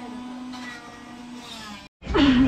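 Electric juicer motor running with a steady whine as fruit is pushed down its feed chute, the lowest tone wavering slightly as the load changes.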